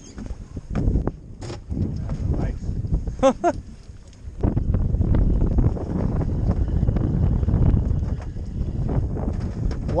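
Wind buffeting the microphone over open water, a low rumble that grows heavier about halfway through, with scattered knocks from handling the fish and the rod on the boat. A short voice sound rises and falls about three seconds in.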